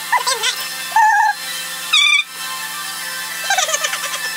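A woman's short playful vocal sounds, squeals and hums that slide in pitch, four in all, the one about two seconds in the highest, over a steady humming background.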